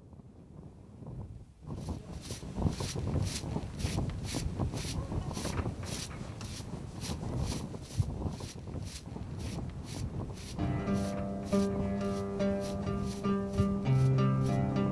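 Short straw hand broom sweeping bare, dusty rocky ground in quick rhythmic strokes, about three a second. About ten seconds in, plucked-string music comes in over the sweeping with held notes.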